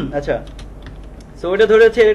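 Computer keyboard typing: separate key clicks as code is entered, with a man's voice starting near the end.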